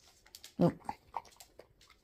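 A dog's claws clicking lightly on a tile floor a few times as it turns and moves about.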